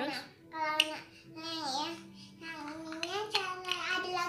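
A small child talking in a high, sing-song voice, in short phrases with a brief pause in the middle.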